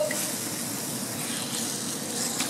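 Chicken pieces in an onion and tomato masala sizzling in a stainless steel sauté pan, stirred with a wooden spatula: a steady frying hiss with a few soft stirring strokes.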